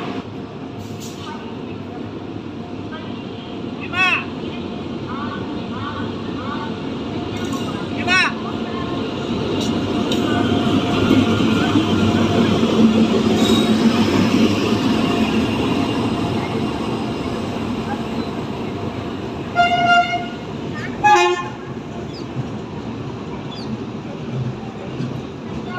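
Passenger train rolling slowly into a station platform, its coaches and wheels running past close by, growing louder toward the middle and easing off. Near the end, two short horn toots sound about a second apart.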